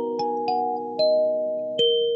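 Lingting K17P 17-key kalimba played in a slow melody: four plucked notes, each tine ringing on under the next.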